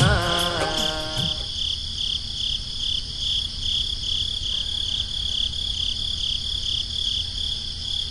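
A cricket chirping in a steady, regular pulse of about two to three chirps a second over a faint steady high hiss, as the song's music fades out in the first second and a half.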